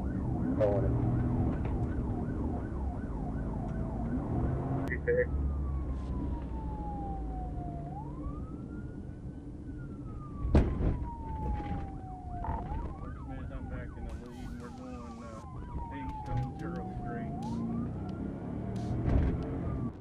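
Police car siren sounding over engine and road noise: a rapid warbling yelp for about the first five seconds, then a slow wail that rises and falls about every four and a half seconds. One sharp knock stands out about ten and a half seconds in.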